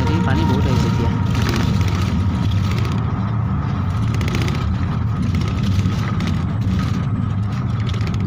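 Steady low rumble of a moving vehicle heard from inside its cabin while it travels, with faint voices in the background.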